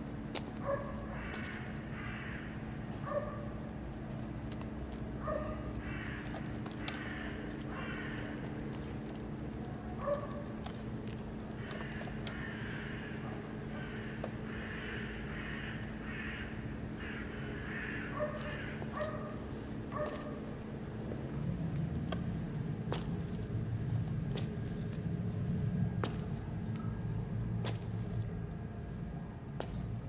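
Birds calling outside in short repeated calls, often two or three together, over a steady low hum. The calls stop about two-thirds of the way through, giving way to a low rumble and a few sharp clicks.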